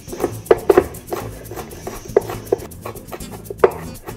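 Chef's knife chopping green chilies on a wooden cutting board: irregular sharp knocks of the blade striking the board, some in quick pairs, about ten in all.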